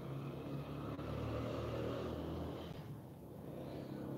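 Low engine hum of a vehicle going past, swelling over the first two seconds and fading about three seconds in.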